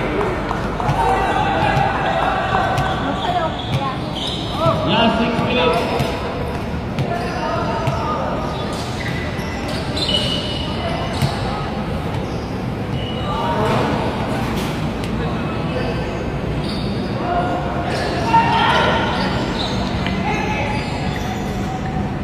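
Sounds of a basketball game on a hard court: the ball bouncing, with players' and onlookers' voices calling out and chatting at intervals.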